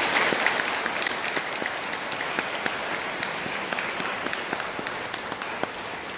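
Audience applauding, a dense patter of many hands clapping that is strongest at the start and slowly dies down toward the end.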